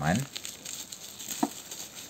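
Plastic bubble wrap crinkling as it is handled around a small cardboard box, with one short sharp click about a second and a half in.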